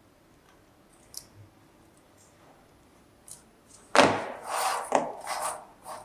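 A few faint ticks of pliers on thin steel tabs, then about four seconds in a sharp click and a couple of seconds of scraping and rattling as the sheet-metal model is handled and moved.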